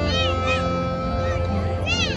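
High school marching band playing sustained held notes. Over them are short swooping pitch slides that rise and fall, one or two near the start and another near the end.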